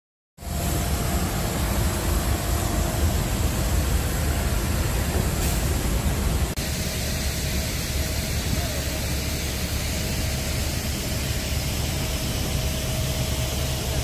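Steady roar of jet aircraft and ramp equipment on an airport apron, heaviest in the low range, with a thin high whine running through it. The sound changes abruptly about six and a half seconds in.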